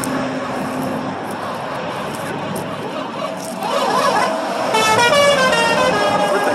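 Highway traffic noise from a convoy of semi trucks and pickups passing, then horns honking from the passing trucks starting about three seconds in, growing louder and sounding steadily through the end.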